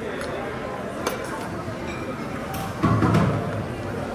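Steady background hubbub of a busy buffet dining room: indistinct voices with a few faint clicks of metal serving ware. A short, louder low sound comes about three seconds in.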